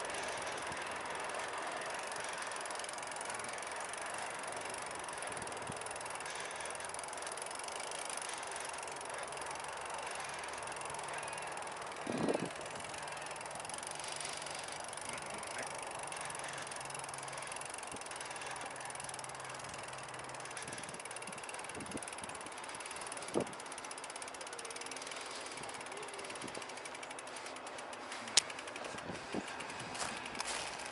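Bicycle ridden over grass and rough ground: the rear hub's freewheel ratchet ticks while coasting, over a steady rushing noise. There are brief knocks from bumps three times, about twelve, twenty-three and twenty-eight seconds in.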